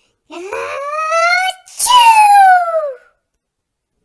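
A person acting out a big sneeze in a high voice: a rising 'ahh' of about a second, then a louder 'choo' that falls in pitch.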